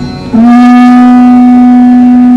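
Rudra veena playing alaap: about a third of a second in, one loud, long note near 230 Hz begins with a short upward slide, then holds steady.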